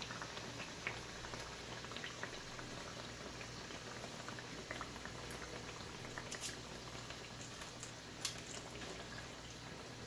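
Cabbage-filled pastries deep-frying in oil in a wok: a faint, steady sizzle with scattered small pops, and one sharper tick just past eight seconds in.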